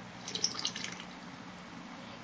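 A person taking a drink from a bottle: a short run of small wet gulping and sloshing sounds in the first second, then quiet room noise.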